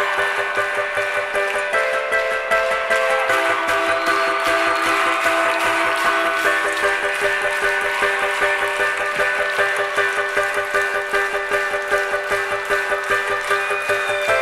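Harp played live, rapidly repeated plucked notes ringing over held chords that change a few times.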